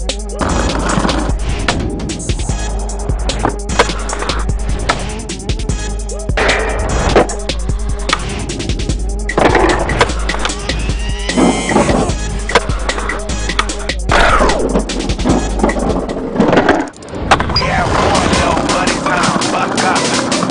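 Music with a steady beat over skateboard sounds: wheels rolling on concrete and the board knocking and sliding along concrete ledges.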